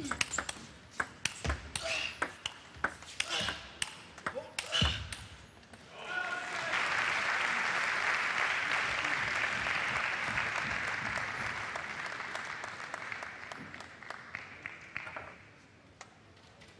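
A fast table tennis rally: the ball clicking on the bats and table in quick succession for about six seconds. Then the arena crowd applauds the won point, the applause gradually dying away near the end.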